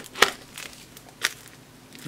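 A small parcel wrapped in plastic being handled on a workbench: two short crinkles of the wrapping, a sharp one just after the start and a softer one about a second later.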